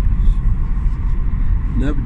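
Steady low rumble of a car driving along a road: engine and road noise. A man's voice starts near the end.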